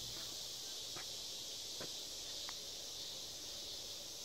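Steady high-pitched insect chorus, with three or four faint ticks spread through it.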